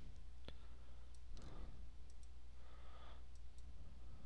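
Computer mouse clicking: one sharp click about half a second in, then a few fainter ticks, over a steady low electrical hum.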